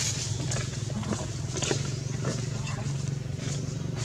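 A steady low hum with scattered short clicks and rustles over it.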